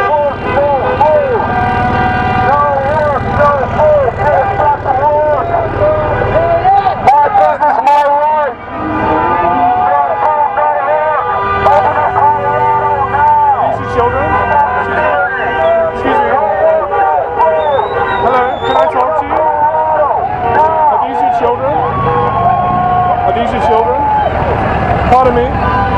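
Many voices shouting indistinctly at once amid protest traffic, with car horns honking, some held long near the end.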